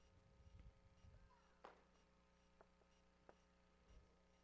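Near silence: room tone with a faint steady hum, a few soft low thuds in the first second and three faint knocks later on.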